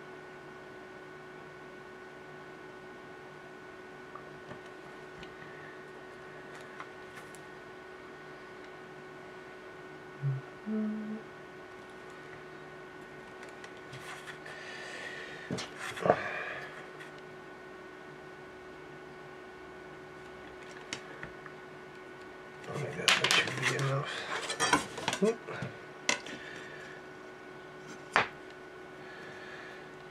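Faint workbench handling noises over a steady electrical hum, then a burst of metallic clatter and sharp taps near the end as a metal ruler is picked up and laid down on a cutting mat.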